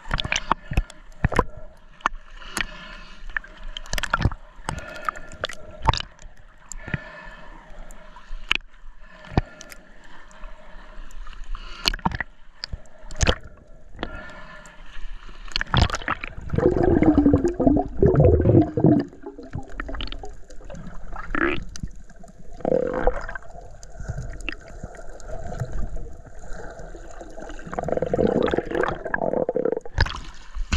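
Underwater sound heard through an action camera's housing: a steady crackle of sharp, irregular clicks, with muffled gurgling surges of water and bubbles that grow louder in the second half.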